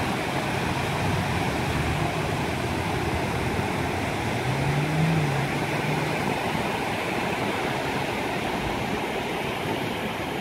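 Small ocean waves breaking and washing up on a sandy beach: a steady rush of surf. A faint low drone rises slightly about halfway through.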